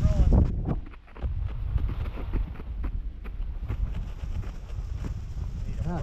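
Sledge running fast over packed snow: a steady low rumble from the runners, wind on the microphone and frequent small knocks as it rides over bumps.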